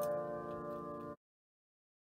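Upright piano's held chord ringing and slowly dying away, with a faint click at the start, then cut off abruptly a little over a second in, leaving silence.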